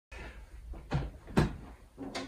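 Two short knocks about half a second apart over a faint low rumble: handling noise as a nylon-string classical guitar is gripped and settled into position.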